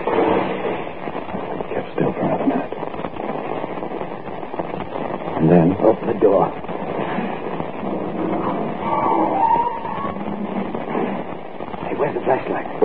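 Low, indistinct voices from an old radio drama recording, with the thin, narrow sound of a 1940s broadcast transfer.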